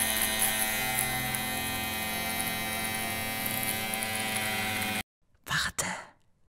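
Electric shaver running with a steady hum, cutting off suddenly about five seconds in; a brief noise follows just before the end.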